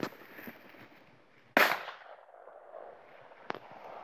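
Two shotgun shots: one right at the start, and a louder one about a second and a half in that dies away in a fading echo. A small click follows near the end.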